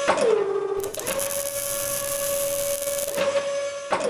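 Sound-designed robot-arm effects for an animated logo: a steady mechanical servo whine that drops in pitch just after the start and again at the end, with a loud hiss like welding sparks from about one second in to about three seconds in.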